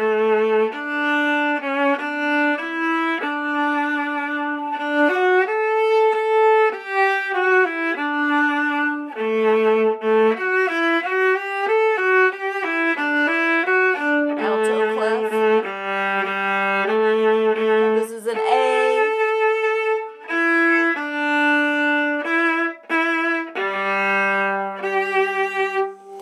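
Solo viola playing a bowed orchestral excerpt: a continuous line of single notes in its lower register, changing pitch every fraction of a second with a few longer held notes.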